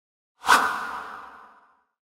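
A whoosh sound effect comes in suddenly about half a second in and fades away over about a second.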